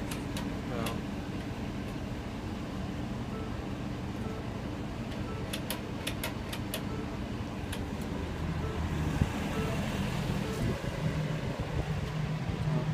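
A car engine idling steadily during a jump-start of a flat battery, with a few sharp clicks about halfway through. The engine hum grows louder over the last few seconds.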